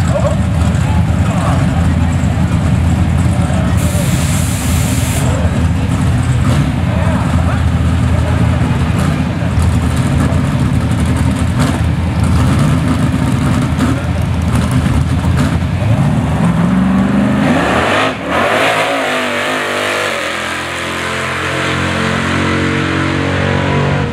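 A drag racing car's engine running loudly at the starting line, then revving up about sixteen seconds in and launching on a single pass down the strip, its pitch changing in steps as it accelerates away.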